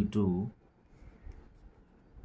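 A spoken word, then faint scratching of a felt-tip pen writing on paper.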